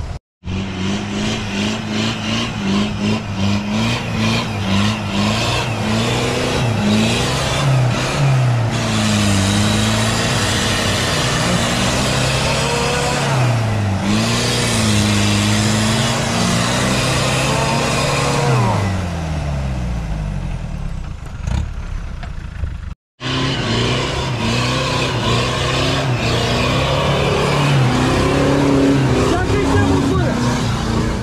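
Off-road 4x4 SUV engines, a Land Rover Discovery among them, revving as they climb a muddy track, their pitch rising and falling again and again. The sound cuts out abruptly twice, just after the start and about three quarters of the way in.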